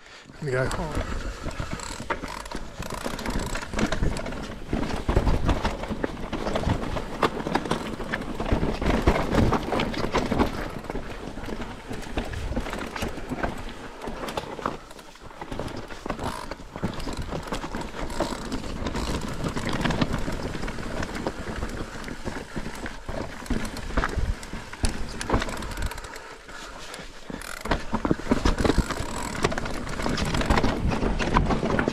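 Mountain bike ridden down a rough, rocky trail: a continuous clatter and rattle of the frame, chain and tyres over the ground, with many sharp knocks and a couple of brief lulls.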